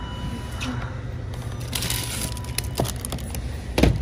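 Handling noises as frozen treats are rummaged in a store chest freezer: crinkling of wrappers around the middle and a sharp knock near the end, over a steady low hum.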